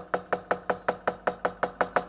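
Rapid, even knocking of a wayang kulit dalang's wooden cempala against the puppet chest (dodogan), about eight or nine strokes a second, marking a pause between the puppets' lines.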